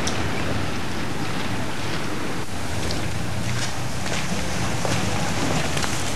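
Steady outdoor background noise with a low rumble and scattered faint crackles.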